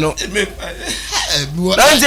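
A man chuckling and laughing softly between bits of talk, with short breathy voiced sounds rather than clear words.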